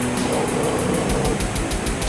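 Death/doom metal: dense distorted guitars and drums, with a fast, even cymbal beat running over them.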